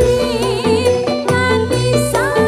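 Live band music with a woman singing into a microphone, her held note wavering with vibrato about a quarter second in, over a steady beat of bass and drums.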